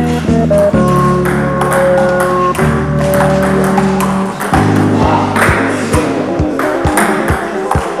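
Table tennis ball clicking off bats and table in a rally, sharp clicks that come quicker and more regular in the second half, over background music.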